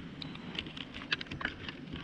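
Irregular light clicks and ticks, a few a second, over a quiet outdoor background.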